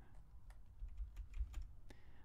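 A handful of faint, irregular computer keyboard clicks.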